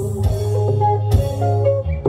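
Live band music in an instrumental passage between sung lines: short melodic keyboard notes over a steady bass line, with a few drum strikes.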